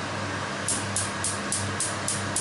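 Gas hob's electric spark igniter clicking rapidly, about three to four sharp ticks a second, starting a little under a second in, as the burner under a frying pan is relit.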